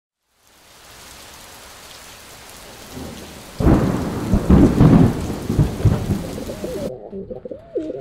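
Thunderstorm sound effect: a rain hiss fades in, then loud rolling thunder begins about three and a half seconds in. Near the end it cuts off abruptly to pigeons cooing.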